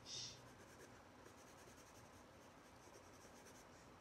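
Faint scratching of a Stabilo pencil drawing short, repeated strokes on a painted paper collage.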